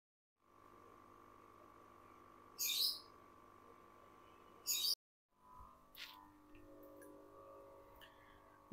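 Two short, high bird chirps about two seconds apart over a faint steady hum.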